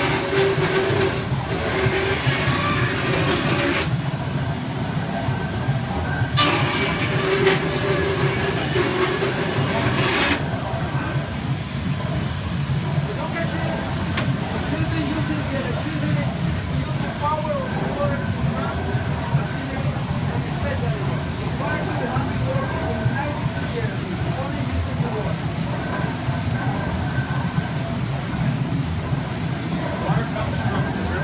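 Belt-driven band saw cutting wood twice, each cut lasting about four seconds, over a steady rumble of the water-wheel-powered line-shaft machinery.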